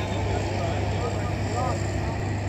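A steady, low motor hum like engine noise, with faint distant voices in the background.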